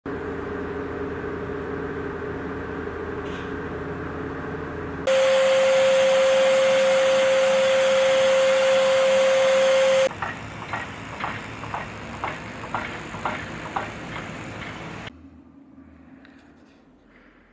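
A steady machine hum gives way, about five seconds in, to a much louder steady rushing with a single steady whine from a cement fineness negative-pressure sieve analyzer running its suction. About ten seconds in this cuts to a quieter noise with regular clicks about twice a second, which drops away near the end.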